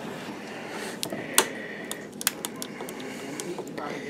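Handling noise from a camera being moved against a shirt: fabric rustle with scattered sharp clicks, the loudest about a second and a half in.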